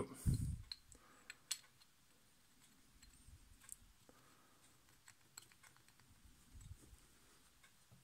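A few light clicks and knocks of small metal parts being handled, the loudest a dull knock right at the start: the steel shaft and bearing of a Necchi Supernova sewing machine's handwheel being fitted together.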